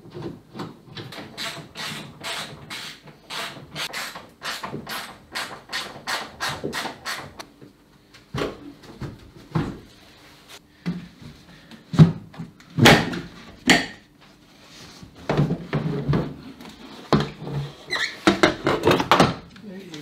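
Ratchet wrench clicking in a steady run, about three clicks a second, as the wiper motor's mounting bolts are undone. This is followed by scattered knocks and clatter of parts and tools being handled.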